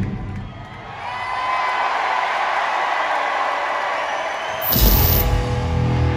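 The heavy rock band drops out and an arena crowd cheers and whoops for a few seconds. Near the end the band comes back in suddenly with drums and distorted guitar.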